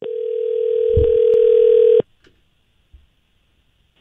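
Telephone ringback tone heard down the line while the called phone rings: one steady ring lasting about two seconds that cuts off abruptly.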